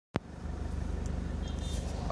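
A single sharp click right at the start, then a steady low hum with faint background noise.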